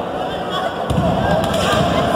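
A heavy thud on a wrestling ring's mat about a second in, with lighter impacts around it, as wrestlers work over a downed opponent; spectators shouting throughout.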